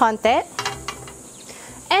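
Light clicks and scrapes of a metal spatula against a frying pan and cutting board as a cooked thin egg omelette is set down, with a faint sizzle from the still-hot pan.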